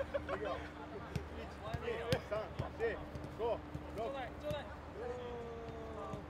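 Footballs being kicked in a passing drill: several sharp thuds of boots striking the ball, the loudest about two seconds in, with players' short shouts and calls between them.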